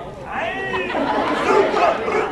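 Several voices calling out together in drawn-out shouts that rise and fall in pitch, with voices carrying on behind.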